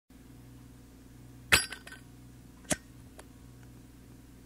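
A steady low hum, broken about one and a half seconds in by a sharp clink with a few smaller clicks trailing after it, then a second single clink about a second later and a faint tick after that.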